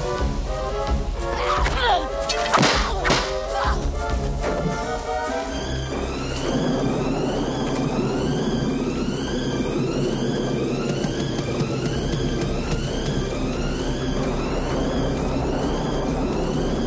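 Film score music over fight sound effects: sharp punch and body-hit impacts and whooshes in the first five seconds. The score then settles into a repeating rising synth figure about once a second over rain.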